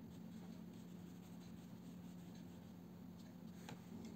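Faint strokes of a watercolour brush on paper over a steady low hum, with one small click near the end.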